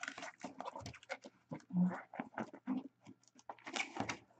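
Cardboard shipping case being opened by hand: a run of short, irregular scrapes, rustles and taps as the flaps are pulled back and the box is handled and turned.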